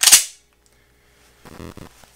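FN 509 9mm pistol's slide snapping forward as it chambers a dummy round: one sharp metallic clack at the very start, fading within half a second.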